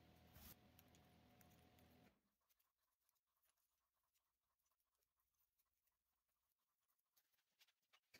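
Near silence: a faint steady hum that cuts off about two seconds in, then only faint scattered ticks.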